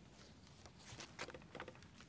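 Near silence with a few faint rustles and light taps around the middle.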